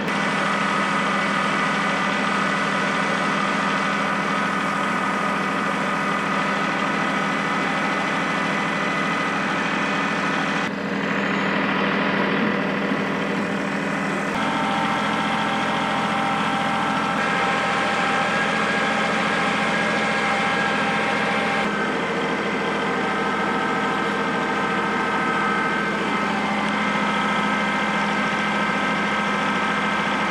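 Compact tractor engine running steadily, heard from the operator's seat, its note stepping up and down a few times as the engine speed changes.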